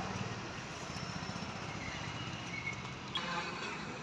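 Steady outdoor background noise, with a brief faint click about three seconds in.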